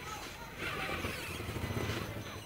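Traxxas Summit 1/10-scale electric RC rock crawler's motor and drivetrain whirring as the truck climbs over rocks, a steady low drone that grows louder about half a second in.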